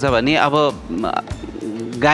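A vocalist singing a short repeated line with music behind, the notes sliding in pitch.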